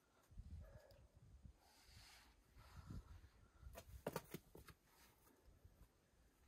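Faint scuffs and scrapes of climbing shoes on the boulder's sandstone, with a cluster of sharp clicks about four seconds in.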